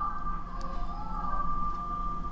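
Low steady background hum with a faint, even high whine, and a single faint click about half a second in.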